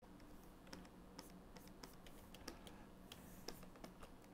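Faint, irregular clicks of computer keys being pressed, over a low steady hum.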